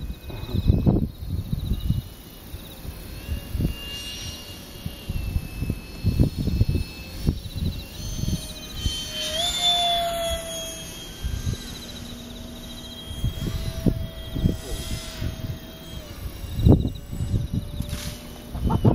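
Electric ducted-fan F-16 model jets flying overhead: a thin whine that slides up and down in pitch as they pass, loudest about ten seconds in. Low rumbles of wind on the microphone come and go throughout.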